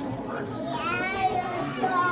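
Children chattering and calling out. One high-pitched child's voice rises and falls in pitch over the second half.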